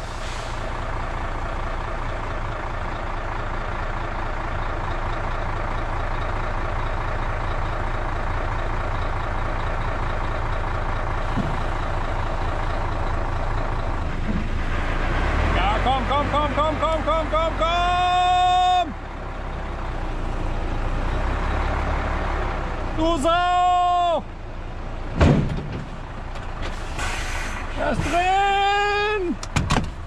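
Mercedes-Benz Actros truck's diesel engine running steadily. In the second half come three separate high-pitched tones, each about a second long, and a single sharp knock.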